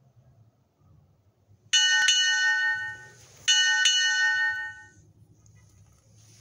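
A small high-pitched bell struck twice, about two seconds apart, each strike ringing out for a second or so before fading.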